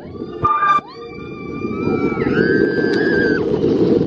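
Coaster riders screaming: a short high-pitched cry, then a long held scream that jumps higher partway through. Under it runs the steady rush of the moving train and wind, growing louder.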